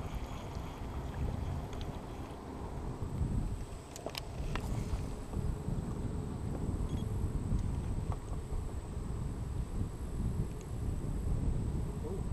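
Steady low rumble of wind and water on an action-camera microphone out on the water in a small boat, with a couple of faint clicks about four seconds in.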